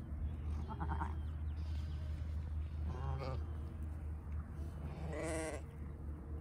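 Sheep bleating three times, about two seconds apart; the last call, near the end, is the loudest and longest, with a wavering pitch. A steady low rumble runs underneath.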